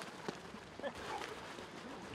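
Footballers' boots running on a grass pitch, with a few short knocks and faint shouts in the background.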